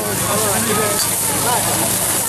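Loud, steady hiss of a gas wok burner at full flame, with food sizzling in the hot wok.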